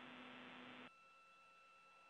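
Near silence: a faint hiss of an open radio channel with a low steady hum, which cuts off abruptly about a second in, leaving only fainter line noise.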